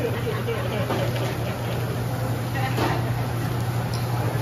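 Teppanyaki restaurant ambience: a steady low hum under the murmur of diners' talk, with a few light taps of the chef's metal spatula and fork on the steel griddle.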